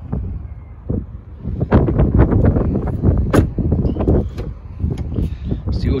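Wind rumbling on a handheld camera's microphone, with a run of knocks and rustles from handling the camera in the middle.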